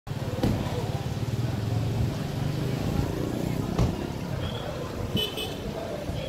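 Outdoor ambience of background voices over a steady low rumble, with a few light knocks and a short high-pitched beep about five seconds in.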